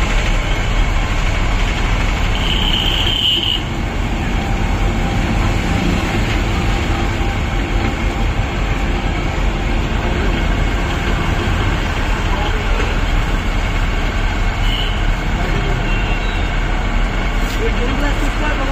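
Belt-driven sugarcane juice crusher running steadily, its gears and rollers turning and crushing cane with a continuous mechanical noise. A short high-pitched tone sounds briefly about three seconds in.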